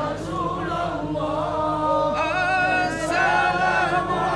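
Men's voices singing a sholawat (Islamic devotional song) together, unaccompanied by the drums; a higher voice joins about halfway through.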